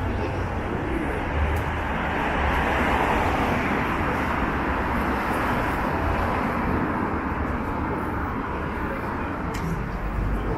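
City street traffic noise, with a vehicle passing that swells over the first few seconds and slowly fades.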